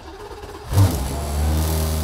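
McLaren 720S GT3X's twin-turbo V8 starting up: it fires with a loud burst about three-quarters of a second in, then settles into a steady idle.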